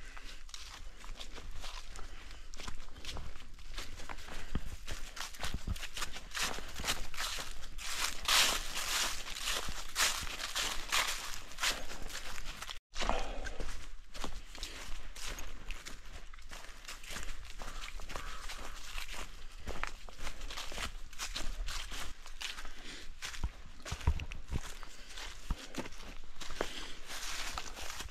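A hiker's footsteps on a forest path covered in leaf litter and low plants, an irregular run of short crunching steps, with a short gap about halfway through.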